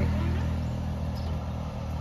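Motor vehicle engine running with a steady low rumble, fading as the loud passage just before dies away.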